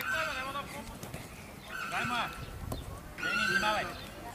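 Children shouting and calling out during a football game: three short bursts of high-pitched voices, the last near the end the loudest.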